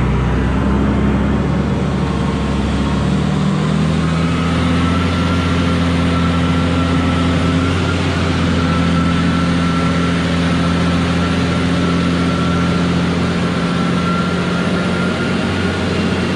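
Engine of a large marina boat-handling forklift running steadily under load as it carries a boat, its note shifting about four seconds in, when a thin steady whine joins it.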